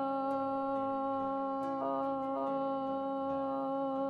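A woman's voice singing one long, steady "oh" on a single note. It is a yoga breathing exercise: the belly is filled with air, then the vowel is sung on the out-breath.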